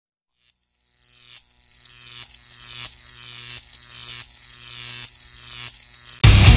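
Electronic intro build-up: a buzzing, humming drone fades in over the first couple of seconds and swells, with a pulse about every two-thirds of a second.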